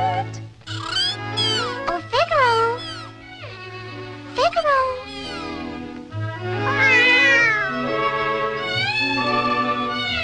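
Cartoon kitten's meows, several short cries that bend down and back up and a longer, more drawn-out one near the end, over an orchestral cartoon score.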